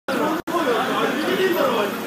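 Several people talking at once, with close, overlapping voices and a brief break in the sound about half a second in.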